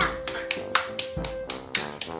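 A small child clapping her hands quickly, about four claps a second, over background music with a long held note.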